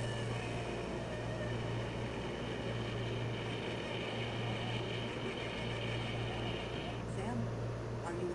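A steady low hum with a high-pitched whine over it, most likely the blooper video playing on the laptop; the whine stops about seven seconds in.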